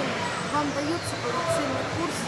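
Faint, indistinct voices over the steady background hubbub of a shopping-mall hall.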